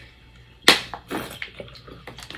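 Someone drinking from a plastic water bottle: one sharp sound about two-thirds of a second in, then smaller sounds of water moving and the bottle handled.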